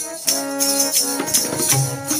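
Kirtan accompaniment with no voice: a harmonium holds steady chords while tabla strokes keep up a quick rhythm, with bright high jingling over them.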